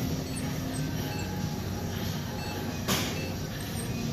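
Steady background hum of a gym room, with one brief click about three seconds in.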